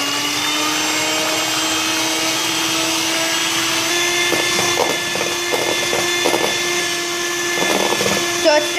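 Electric hand mixer running on high speed, its twin beaters whisking egg whites in a plastic bowl toward stiff peaks: a steady motor whine that rises slightly in pitch about four seconds in. Several short rattles come in the second half.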